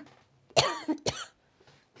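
A woman coughing twice: a sharp cough about half a second in and a shorter one about a second in. She links these coughing fits to her spasmodic dysphonia.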